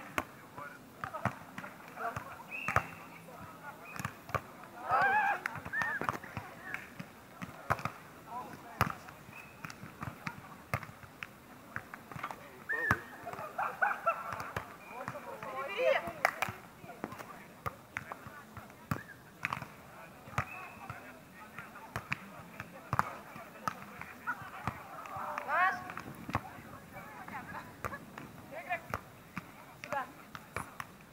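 Beach volleyball being played: sharp slaps of hands and arms on the ball at irregular intervals, with players' shouts and calls in between.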